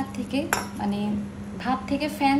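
A sharp clink on a ribbed glass bowl holding rice and water, about half a second in, as the rice is handled for washing.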